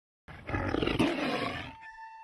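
A big cat roaring once: a rough, pulsing roar that starts about a quarter second in, peaks about a second in and fades away. A steady held tone comes in near the end.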